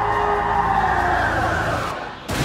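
A harsh, drawn-out titan roar from the anime soundtrack. It holds at full strength and cuts off suddenly near the end.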